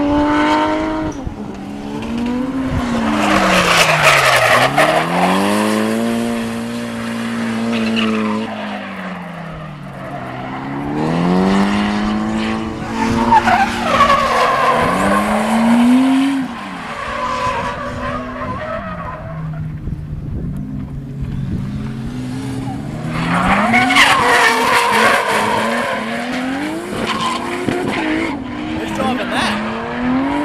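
Drift cars sliding through corners: engines revving up and down hard, with three long stretches of loud tyre squeal as the rear tyres break loose and smoke.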